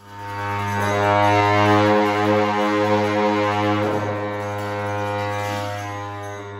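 Tibetan dungchen long horns blown by monks: one long, low, steady drone rich in overtones, swelling in over the first second and easing slightly near the end.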